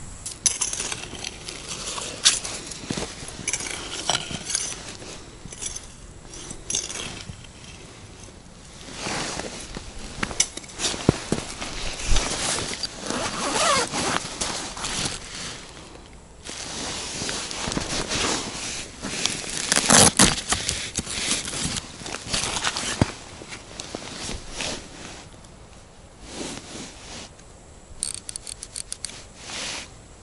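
Handling noise of winter fishing gear: rustling and scraping of gloves and clothing against a soft rod case, with a zipper opening and many small knocks and clicks as ice rods are taken out. Near the end there is a short quick run of faint clicks.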